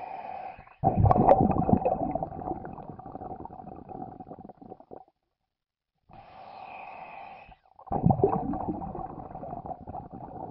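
A short sound effect that plays twice in a row. Each time, a steady hum with a held tone is followed by a sudden loud, low rumble that fades out over a few seconds.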